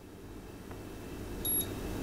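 A single short electronic beep from the LiitoKala Lii-600 charger about one and a half seconds in, as its current button is pressed to step the manual charge current. Faint hiss underneath.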